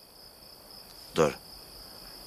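Crickets chirring in a steady, high, continuous trill. A man says one short word about a second in.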